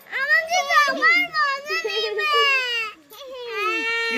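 A small child's high-pitched voice, long and drawn-out, sliding up and down in pitch, with a short break about three seconds in.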